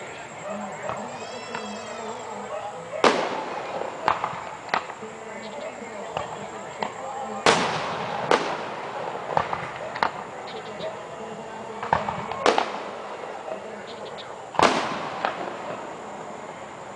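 Aerial fireworks shells bursting overhead: four loud booms a few seconds apart, with quieter bangs and crackles between them.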